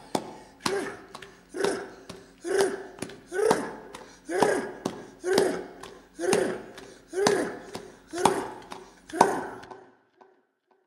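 A man's voice giving a short, pitched syllable about once a second, ten times in a steady rhythm, each starting with a sharp tap, like chanting or humming in time with brush strokes.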